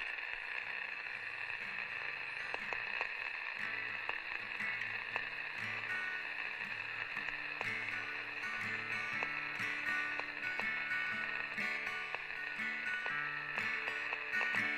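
Instrumental intro on acoustic guitar: low notes picked one after another, beginning about a second and a half in, over a steady high-pitched chirring background.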